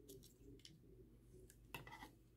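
Faint clicks and light rattles of hard plastic parts on a Transformers Studio Series Bonecrusher action figure being folded and rotated by hand, with a few scattered clicks and the loudest one near the end.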